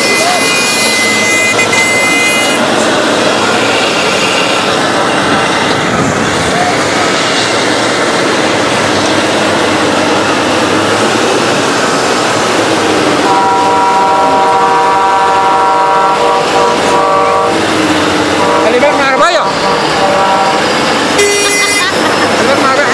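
Heavy earthmoving machinery running steadily as a Caterpillar wheel loader works a sand pile among dump trucks. A vehicle horn sounds for about four seconds a little past halfway, and a shorter high steady tone sounds in the first couple of seconds.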